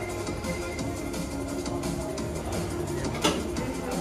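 Music playing, with one short sharp knock a little after three seconds in, the loudest moment.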